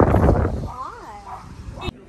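A dog whining once, a short high whine that rises and falls, about a second in, after loud outdoor noise on the microphone.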